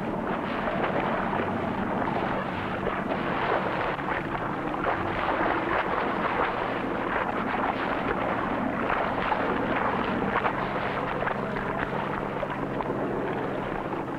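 Mackerel thrashing in a seine net hauled alongside a fishing boat: a dense, steady splashing and churning of water, with a low steady hum underneath.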